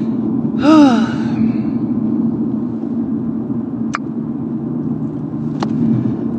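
Steady low rumble of a car's cabin while driving, with a short wordless vocal sigh about a second in and two sharp clicks later on.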